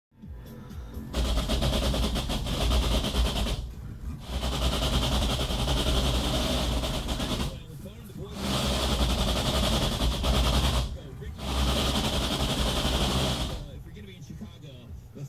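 Front tyres chattering against the shop floor as the stationary car's wheels are steered with a 2008 Toyota Prius electric power-steering assist, engine off. There are four bouts of rapid chatter, each a few seconds long, with short pauses between them. The chatter is the tyres scrubbing on the floor, not noise from the steering column.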